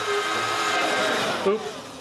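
A steady whirring noise like a small motor running, with faint voices over it; it fades out about a second and a half in.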